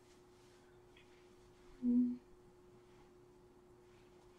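A single short closed-mouth "mm" from a person, about halfway through, over near-silent room tone with a faint steady hum underneath.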